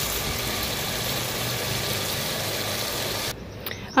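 Bitter gourd curry with onions and tomatoes sizzling steadily in an aluminium pot on a gas stove; the sizzle cuts off suddenly near the end.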